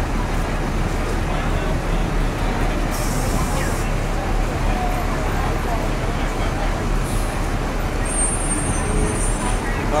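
Busy city street: a steady rumble of traffic with passersby talking. A short hiss about three seconds in, and a fainter one near seven seconds.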